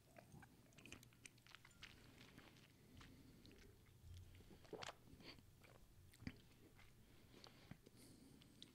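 Near silence with faint mouth and lip clicks and smacks from sipping and tasting whiskey close to the microphones, a few slightly sharper ones near the middle.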